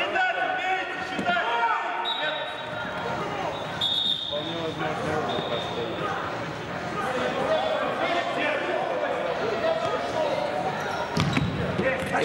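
Indoor futsal match: players' voices call out across a large, echoing sports hall while the ball is played and bounces on the wooden floor, with a few sharp kicks near the end.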